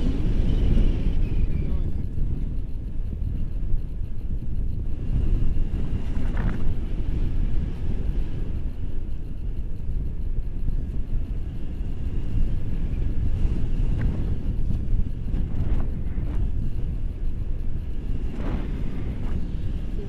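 Wind from the flight buffeting the camera's microphone on a tandem paraglider: a steady, loud, low rumble.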